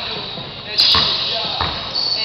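A weighted 2-pound training basketball bouncing on a gym floor, twice in the second half, about two-thirds of a second apart.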